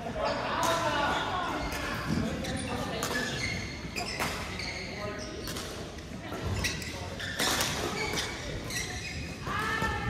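Badminton hall sounds: scattered sharp knocks of rackets hitting shuttlecocks and feet landing on the court floor, over indistinct voices.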